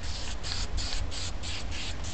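Aerosol spray paint can hissing in quick, even pulses, about five a second, as black paint is sprayed on for a planet's shadow.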